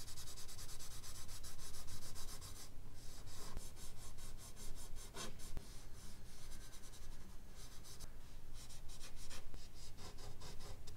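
Charcoal on drawing paper: fingers rubbing and a charcoal stick stroking the sheet in rapid, repeated scratchy strokes, with a short pause about three seconds in.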